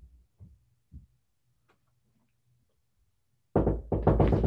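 Footsteps coming up a flight of stairs: three soft, low thumps about half a second apart, then quiet. A much louder sound cuts in near the end.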